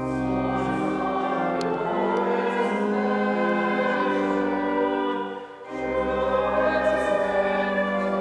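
Congregation singing a hymn with pipe organ accompaniment, with long held notes. The music drops away briefly about five and a half seconds in, then carries on.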